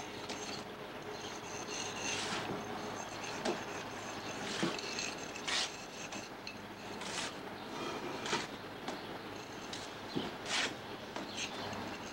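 Steel mason's trowels scraping mortar off mortar boards and onto concrete blocks: short, irregular scrapes every second or so.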